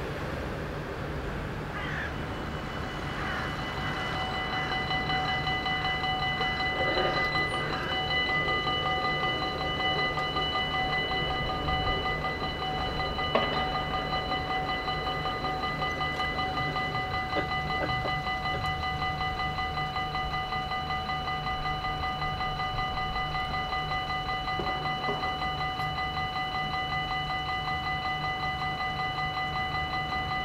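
Dutch level-crossing warning bells ringing in rapid, even strokes as the crossing activates and the barriers lower. They start about two seconds in and keep ringing steadily.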